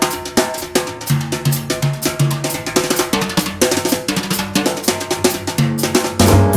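Jazz drum kit playing a busy solo break of rapid snare and kit strikes, with bass notes sounding underneath.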